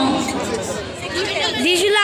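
Several people's voices chattering and talking over one another, with the babble of a busy crowd behind.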